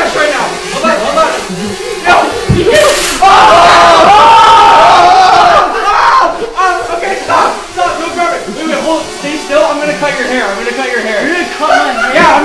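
Young men yelling, screaming and laughing without clear words. The loudest part is a long scream from about three to six seconds in, just after a sharp smack. A small quadcopter drone buzzes under the voices.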